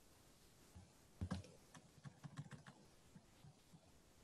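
Faint typing on a computer keyboard: about a dozen quick key clicks, starting about a second in and thinning out toward the end.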